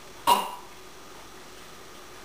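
A single short cough about a quarter second in, then quiet room tone.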